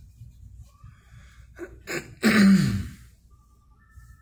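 A person sneezing: two quick catches of breath, then one loud sneeze with a falling voice about two seconds in.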